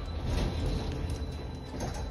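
Montegalletto lift cabin running along its cable-hauled track: a steady low rumble with a faint high whine, and short knocks shortly after the start and near the end.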